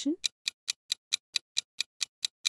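Quiz countdown-timer sound effect: clock-like ticking, even and fast at about four and a half ticks a second.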